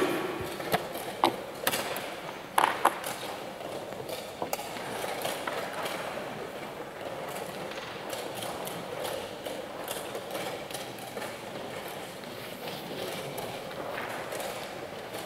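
Wooden chess pieces set down on the board and a chess clock being pressed, a few sharp clicks and knocks in the first few seconds, then steady background noise of a playing hall.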